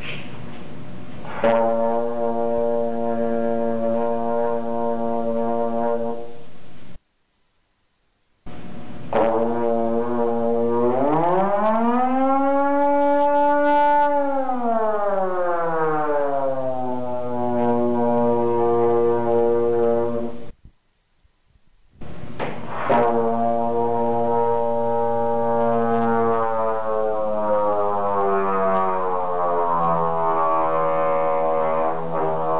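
Trombone playing three long held notes, split by two short gaps. The first, blown with ordinary air in the horn, is steady. The second glides up in pitch and back down again, and the third is steady again, sagging a little near the end.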